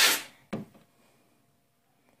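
A spoken word trailing off, then one brief tap about half a second in, followed by near silence.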